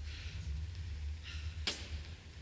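Steady low hum of a large hall with one sharp knock about three-quarters of the way through.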